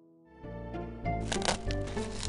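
Background music with a steady low bass, joined about a second in by the crackling and crinkling of metallic foil gift wrap being torn off a box.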